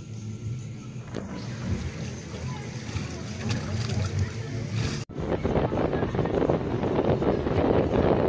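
Wind blowing across the microphone over sea water moving around a wooden pier. About five seconds in, at an edit, the wind noise turns louder and gustier.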